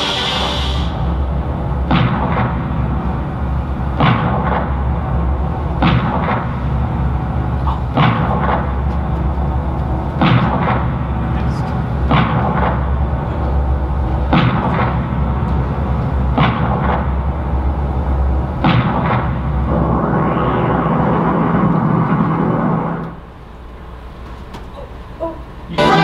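Movie soundtrack played over room loudspeakers: a steady low drone and music, broken by a heavy booming hit about every two seconds. Near the end a noisy swell builds, then drops off suddenly.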